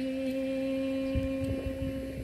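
A woman's voice holding one long, steady note at the end of a phrase of a Dao folk song. A few soft low thumps come in the second half.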